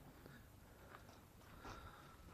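Near silence: faint outdoor background, with a slight short sound about a second and a half in.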